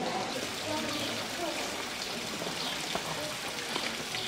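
Tiered stone courtyard fountain splashing steadily into its basin, with people talking in the background.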